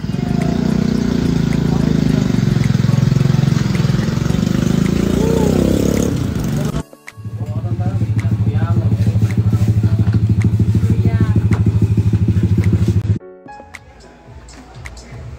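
Street noise with a motorcycle engine running, loud and rough, cut off suddenly about seven seconds in. It is followed by a steady low hum with a fast, even pulse that stops abruptly near the end.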